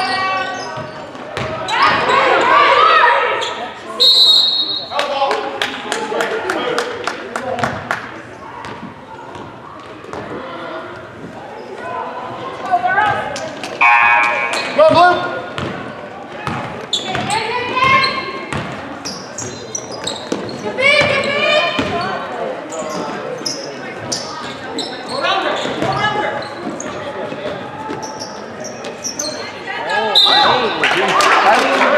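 A basketball being dribbled and bouncing on a hardwood gym floor, with shouts from players and spectators echoing in the gym. A short high whistle blast sounds about four seconds in.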